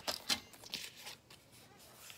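Fiskars sliding paper trimmer cutting cardstock: a few short scratchy strokes of the blade carriage in the first second, then softer paper rustling as the cut strip is handled.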